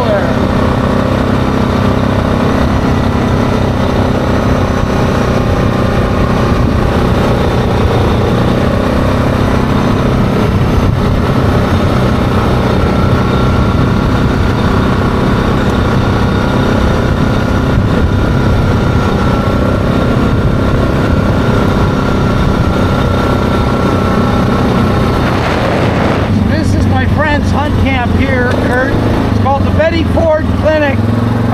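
ATV engine running steadily at cruising speed while riding along a gravel road; its note changes a few seconds before the end.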